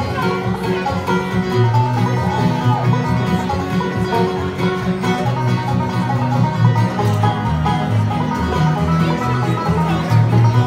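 A live band playing an instrumental break in a country or bluegrass song, led by plucked strings over a steady bass line.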